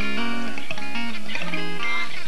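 Electric guitar playing a short run of single notes and chords through an amplifier, each note held briefly before stepping to the next.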